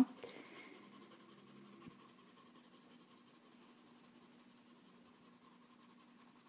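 Faint, steady scratching of a coloured pencil shading on paper.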